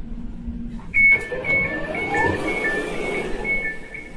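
Elizabeth line Class 345 train doors opening. The door alert sounds as alternating high and low beeps, about two pairs a second, starting about a second in, over a rising whir of the door mechanism.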